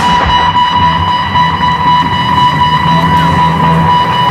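Loud rock music with electric guitar, over a steady high ringing tone that holds throughout.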